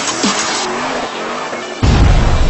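Electronic intro music with a car sound effect laid over it: a noisy rush of a passing or skidding car. Near the end it breaks into a sudden loud, deep bass hit.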